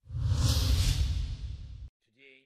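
Whoosh sound effect of a news-bulletin story transition: a sudden swell of hiss over a deep rumble that eases off over about two seconds and cuts off just before the next report.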